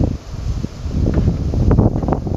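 Wind buffeting the microphone, a steady low rumble, with a few short knocks in the second half.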